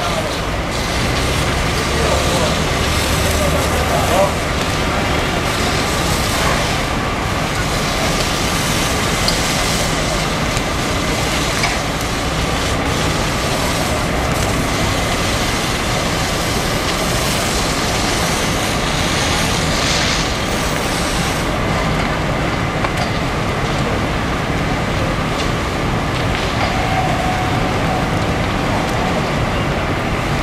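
Fire engines running steadily at the scene with a low engine drone and a faint steady whine, as their pumps feed the water jets; onlookers' voices murmur underneath.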